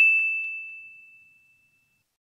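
A single bright electronic chime from a logo sound effect, ringing out on one high tone and fading away over about a second and a half, with a few faint ticks in the first half second.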